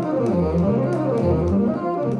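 Bassoon playing a low melody, a few sustained notes moving from one pitch to the next.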